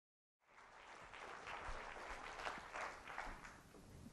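Audience applauding, starting suddenly about half a second in and thinning out near the end.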